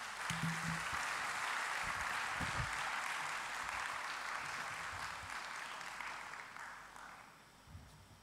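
Audience applause, steady at first and dying away about seven seconds in.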